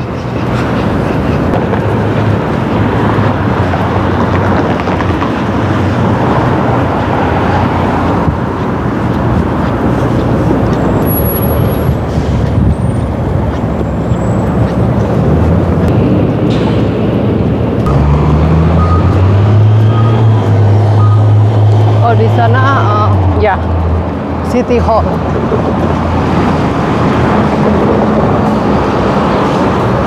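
City street traffic noise, steady and loud, from passing cars. A heavy vehicle's engine runs low and loud for about five seconds, starting a little past the middle.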